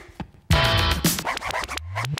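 Electronic downtempo music built from tape-loop samples. A short break of near silence is followed, about half a second in, by a loud hit with a falling low tone and choppy, cut-up sample sounds. A low tone rises near the end.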